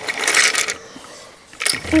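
Small plastic toy train pushed by hand across a tiled floor, its wheels and body rattling and scraping in a short burst, then a second brief scrape near the end.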